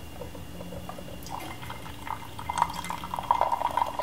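Brewed tea pouring from a porcelain gaiwan into a glass pitcher: a thin stream splashing and trickling, faint at first and louder after about two seconds.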